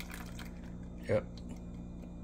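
A low, steady hum with one short spoken "yep" about a second in.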